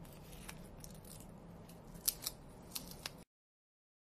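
A paper wipe rubbing and scraping around the rim of a camera lens guard, cleaning off residue, with several small sharp clicks as it is handled. The sound cuts off abruptly a little after three seconds in.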